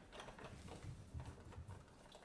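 Near silence: room tone with a faint low hum and one soft bump just over a second in.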